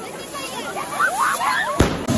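Hand-held spark-spraying fireworks fizzing, with crowd voices shouting over them, getting louder about a second in. A sudden sharp crack near the end.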